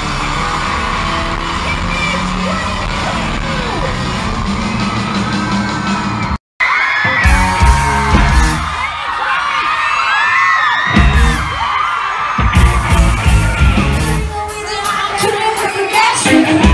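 A live rock band playing loud. The sound cuts out abruptly a little past six seconds and comes back as a crowd screaming, with many high voices over heavy low booms that come and go in several bursts.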